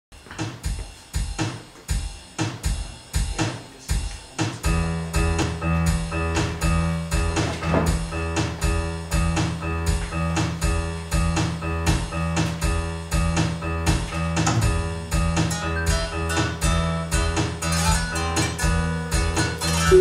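Computer-synthesised music played live from iPhones running the SoundHandler networked sequencer: a steady drum beat of about three strokes a second. About four and a half seconds in, a single low bass note held steady and sustained chord tones join it.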